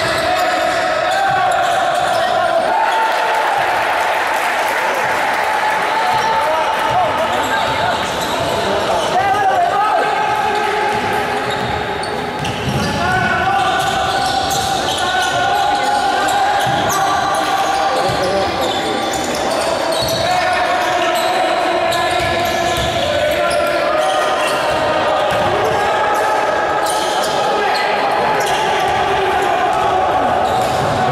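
A voice holding long, sung-sounding notes that step up and down in pitch, with frequent short thuds beneath.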